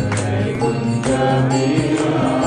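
Devotional mantra chanting with music, sustained pitched tones under a sharp percussive strike about once a second.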